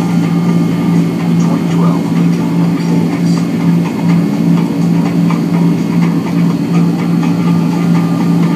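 Steady low drone of a Boeing 767-300ER's twin turbofan engines and airflow heard inside the passenger cabin in flight, an even hum that does not change.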